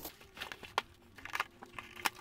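Faint crinkling and scraping of cardboard as the printed lid of a large cardboard box is pulled open, with a few short crackles spread through.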